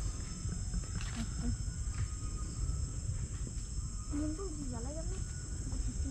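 Steady high-pitched insect chorus droning through the forest over a low rumble on the microphone, with a short wavering voice rising and falling about four seconds in.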